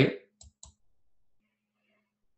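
The end of a spoken word, then two quick short clicks close together, then near silence.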